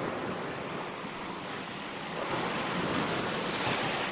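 Water rushing and splashing in the wake of a small sailing dinghy under way, with wind on the microphone. The rush swells louder in the second half.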